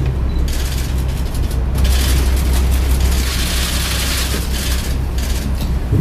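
Camera shutters firing in rapid bursts, in two stretches: from about half a second to nearly two seconds in, and again from about two to five seconds. A steady low hum runs underneath.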